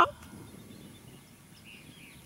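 Faint outdoor background noise: a low, even rumble with no distinct event, after the tail of a laugh at the very start.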